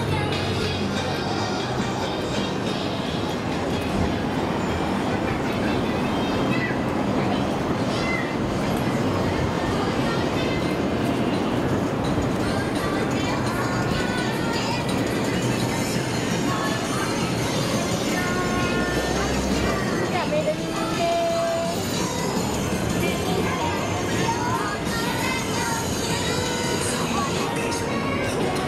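Busy city shopping-street ambience: music playing from shop loudspeakers and passers-by talking over a dense, steady rumble of the street.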